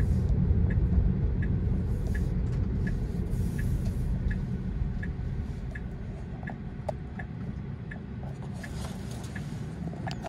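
Road and tyre rumble inside a Tesla Model 3's cabin, dying away as the car slows to a stop. Over it the turn-signal indicator ticks steadily, about once every 0.7 seconds.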